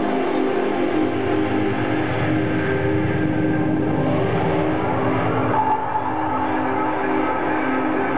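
Live electronic music played on synthesizers: sustained chords held steady over a dense, rumbling low synth layer that is strongest in the first half.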